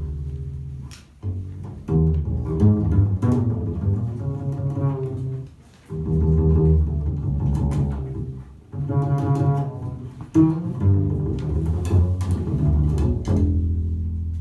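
Double bass played pizzicato in a jazz piece, with plucked phrases broken by short pauses.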